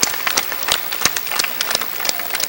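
Audience applauding: a dense, irregular patter of many hand claps.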